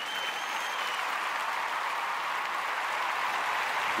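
Crowd applause that swells in, holds steady and cuts off abruptly, with a brief whistle in the first second.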